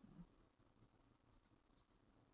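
Near silence: room tone, with a few faint, short clicks a little past the middle.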